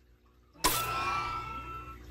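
Power-coming-back-on sound effect: after a short silence, a sudden whoosh with a steady hum and ringing tones starts about half a second in and fades away over the next second and a half.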